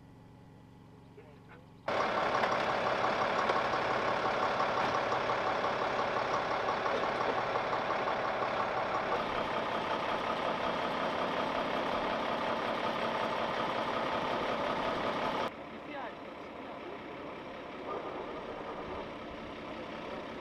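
Truck engine running steadily, starting suddenly about two seconds in and cutting off suddenly near the end, leaving a quieter steady background.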